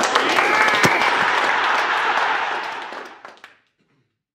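Small audience applauding, the clapping tapering off and ending about three and a half seconds in.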